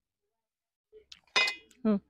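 A kitchen knife set down on a stainless steel tray: one sharp metallic clink with a brief ring, preceded by a couple of faint ticks.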